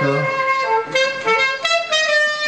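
Alto saxophone playing a phrase of short notes through the stage microphone during a soundcheck. The phrase starts on a few low notes and climbs to higher ones.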